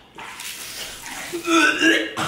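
Fake vomiting: a man's loud retching sound, loudest in the last half second, over liquid pouring and splashing onto a person's head and the couch.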